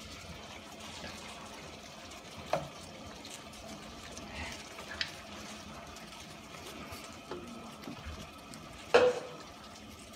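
Wooden spatula stirring a saucy stir-fry in a frying pan, over a steady hiss of the food cooking. A few sharp knocks of the spatula against the pan come every two or three seconds, the loudest near the end.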